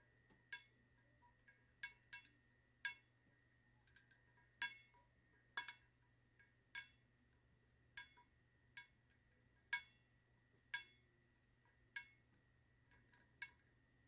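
Fingernails clicking against a 20 oz skinny sublimation tumbler as it is turned in the hands: faint, sharp clinks with a short ring, about one a second and unevenly spaced.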